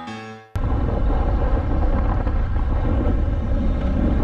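Short piano-like intro music ends abruptly about half a second in. A loud, steady rush of motorcycle riding noise follows, wind and engine picked up by a helmet-mounted camera.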